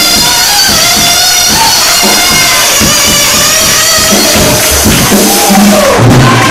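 Live church band playing loudly: a drum kit with steady beats and cymbals under sustained chords, with crowd noise from the congregation.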